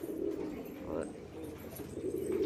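Several domestic pigeons cooing, a low continuous murmur.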